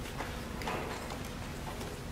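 A few hard-soled footsteps clicking irregularly on a tiled floor over a low, steady hum of room noise in a large hall.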